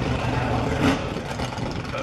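Steady low rumble of an idling engine, with a single short knock a little under a second in.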